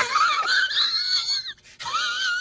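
High-pitched, wavering squeal from an outro sound effect. It is held for about a second and a half and breaks off, and a second squeal begins near the end.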